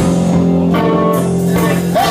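Live band music, an electric guitar to the fore over bass and a sustained chord.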